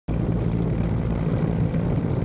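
Steady engine drone with a rushing noise over it, starting abruptly.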